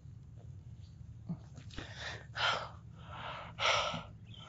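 A man gasping and breathing heavily, with three loud breaths in the second half, over a low steady hum.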